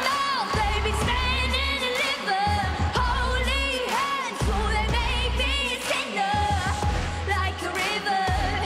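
A young girl singing a pop ballad solo into a microphone, with long held notes that waver and slide, over a loud backing track with a deep pulsing bass and repeated drum hits.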